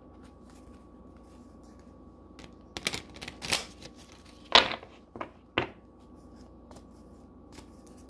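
Tarot cards shuffled by hand: quiet at first, then a few short bursts of cards rustling and clicking against each other from about three to six seconds in, the loudest midway.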